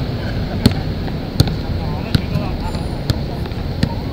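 Basketball being dribbled on an outdoor hard court: five sharp bounces, roughly one every three-quarters of a second, over steady low background noise.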